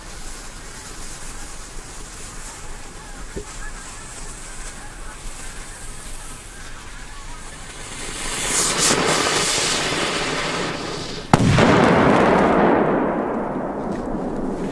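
A firecracker's fuse burns on the ground with a hiss that grows loud near the end. About eleven seconds in, one sharp bang follows, and its noisy tail fades over a couple of seconds.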